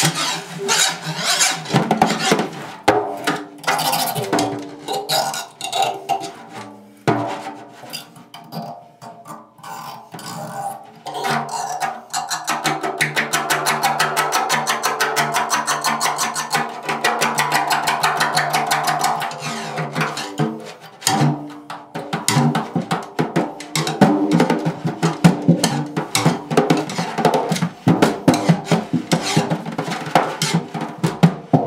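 Improvised solo drum, the head struck, scraped and pressed with a stick and a bare hand. Scattered strikes thin out to a quieter patch, then from about twelve to twenty seconds a fast, even stream of strokes sets the head ringing a steady tone. Busier, irregular hits follow.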